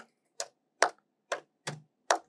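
Computer keyboard keystrokes: about four separate clicks, unevenly spaced.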